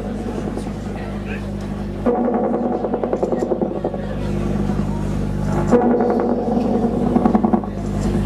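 Live electronic music: sustained synthesizer drones with a fast buzzing pulse. The texture thickens suddenly about two seconds in and again near six seconds.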